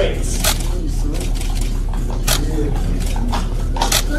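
Indistinct murmur of background voices over a steady low hum, with a few sharp clicks scattered through it.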